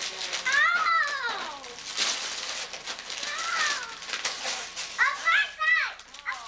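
A young child's high-pitched voice calling out in three stretches that rise and fall, over the crinkling and tearing of Christmas wrapping paper.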